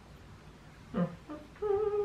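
A woman's closed-mouth 'mm' hum: two short sounds about a second in, then one held note lasting about half a second, made with her lips closed on a knitted panel held in her teeth.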